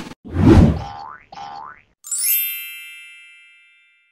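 Cartoon-style logo sound effects: a short hit and a thump, two rising springy boings, then a bright chime that rings out and fades away.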